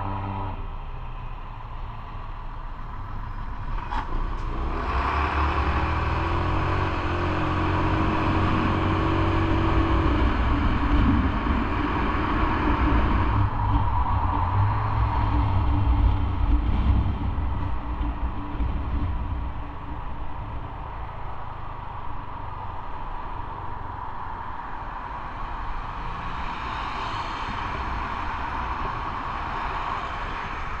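Motorbike engine pulling away from a stop about four seconds in and rising in pitch as it accelerates. A steady rush of wind and road noise follows while riding through traffic, easing off later as the bike slows.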